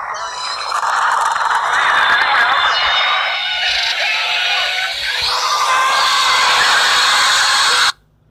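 Movie trailer soundtrack: a loud, harsh wash of noise with high whining tones, growing louder about a second in and cutting off abruptly just before the end.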